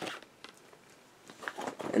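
Soft handling noises from a clear plastic stamp case: a few light clicks and rustles near the start and again in the second half, with a quiet stretch between.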